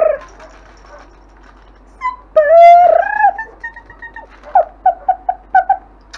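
Longhaired German Shepherd puppy whining and yelping in a high voice: one long whine about two and a half seconds in, then a quick run of about six short yelps near the end.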